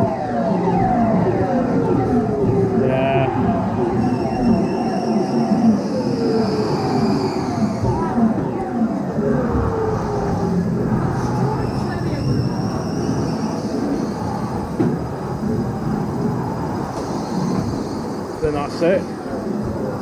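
Shooter dark ride's gun sound effects: a steady string of short zaps sliding down in pitch, over the low rumble of the ride car running on its track.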